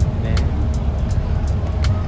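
Steady low rumble on a passenger ferry's open deck, from the ship's engine and wind, with a few faint clicks.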